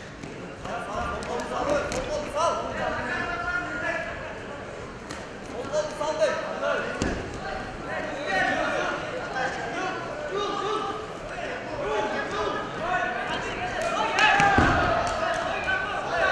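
People shouting in a large arena hall, voices carrying on through the bout, with a few dull thuds from the wrestlers grappling on the mat, the clearest about seven and fourteen and a half seconds in.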